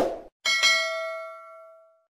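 Subscribe-button animation sound effect: a brief click at the start, then about half a second in a single bell-like ding that rings and fades over about a second and a half.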